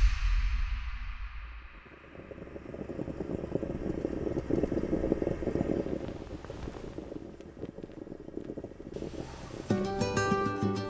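A deep musical boom dies away over the first two seconds. Then a rough, crackling, sputtering noise swells and fades, fitting an aluminium stovetop moka pot gurgling as the coffee comes up. Plucked-string music starts just before the end.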